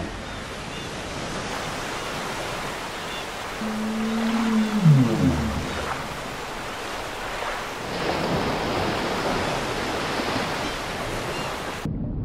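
Sea waves washing steadily. About four seconds in, a low tone holds briefly and then slides downward in pitch, and from about eight seconds the wash grows louder and brighter.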